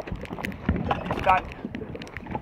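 Small open boat being paddled at sea: irregular knocks and splashes of paddle strokes and water against the hull, with wind on the microphone.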